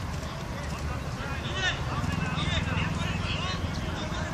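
Children's voices calling out across an outdoor football pitch, distant and high-pitched, over a steady low background rumble.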